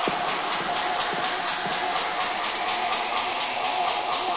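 A techno track in a breakdown with no kick drum: a steady hissing noise wash over a held mid-pitched tone, with faint even ticks on top.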